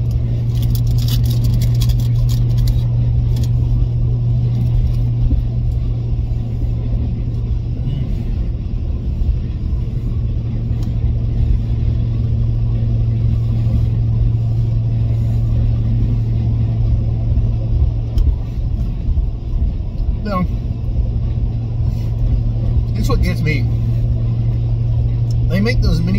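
Car engine running steadily, heard from inside the cabin as a low, even drone.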